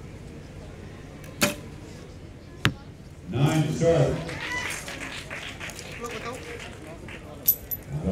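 Recurve bow shot: a sharp snap as the string is released, then a shorter click a little over a second later as the arrow strikes the target.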